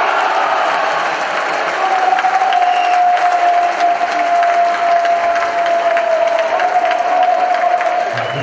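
Cheering and clapping after a goal, with one long held tone sounding above it from about two seconds in.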